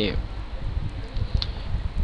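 Steady low room noise and hum, with one faint click about one and a half seconds in.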